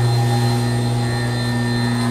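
Garaventa vertical platform lift running as the platform travels: a steady low drive hum with fainter steady whining tones above it.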